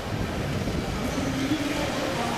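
Outdoor ambience: a steady low rumble, with a distant voice faintly heard in the second half.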